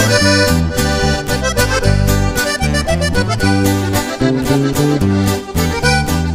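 Norteño band playing an instrumental break between verses of a corrido: button accordion carries the melody over strummed guitar and a bass line on a steady beat.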